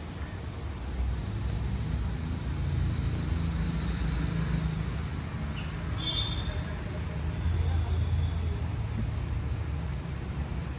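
Low rumble of a motor vehicle, growing louder about a second in and strongest near eight seconds. A short high squeal comes about six seconds in.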